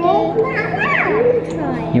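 Children's voices and chatter, one voice rising high about halfway through, over a steady low hum.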